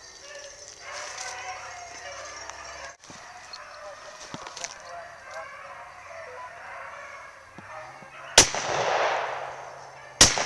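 Beagles baying as they run a rabbit's track, then one loud shotgun blast about eight seconds in, from a double-barrel shotgun, ringing out and fading over a second or so.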